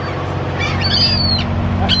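Seagulls calling as they flock overhead, one high, arching cry about halfway through, over a steady low hum.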